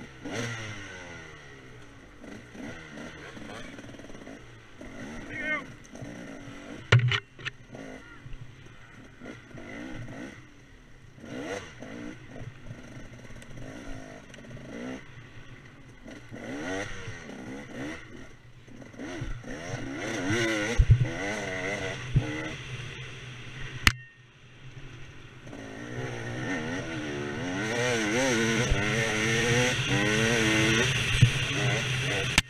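KTM 300 two-stroke dirt bike engine revving up and down as it is ridden through tight wooded singletrack, with a few sharp knocks and clatter from the bike over rough ground, about seven seconds in and again a little past twenty seconds. Near the end it gets louder and holds higher revs as the rider opens it up on a faster trail.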